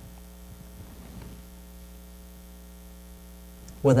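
Steady low electrical mains hum in the audio chain, unchanging through a pause in speech, with a man's voice starting again right at the end.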